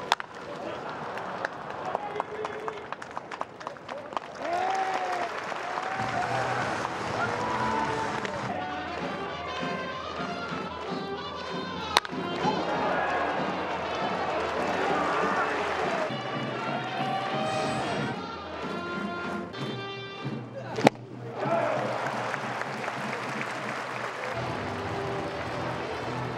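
Sharp cracks of a baseball bat hitting the ball: one at the very start, one about halfway through and one near the end, each a single short crack. They sit over steady talking and stadium background.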